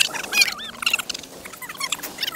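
A flock of small birds chattering: many short, high, overlapping chirps.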